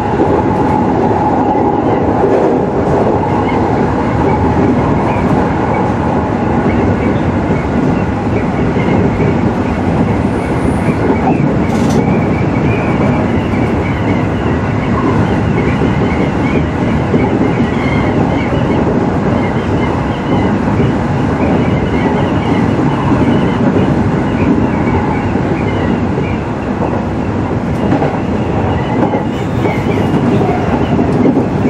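JR 209 series electric commuter train running along the track, heard from inside the leading car: a steady, loud rumble of wheels on rail. A steady whine is heard at first and fades out about seven seconds in.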